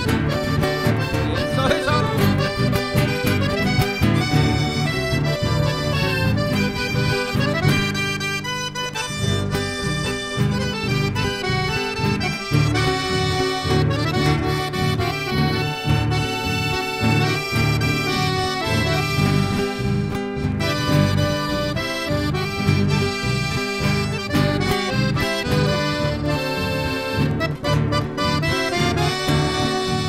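Chamamé played on a button accordion, two acoustic guitars and a bass guitar in an instrumental passage, with no singing. The accordion carries the melody over a steady beat from the guitars and bass.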